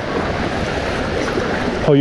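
Fast current of flood-release water from a dam spillway rushing steadily down a shallow river channel, a loud even wash of water noise.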